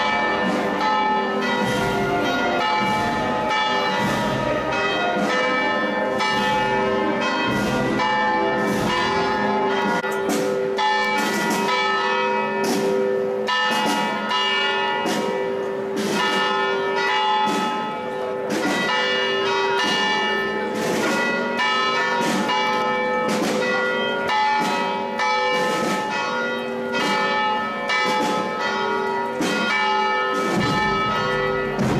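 Church tower bells pealing, struck rapidly and continuously so that the strikes overlap in a long ringing wash. It is a festive peal marking the Easter procession of the Risen Christ.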